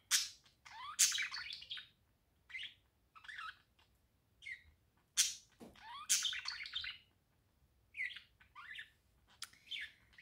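A bird chirping in a string of short, high calls and brief warbling phrases, with gaps between them.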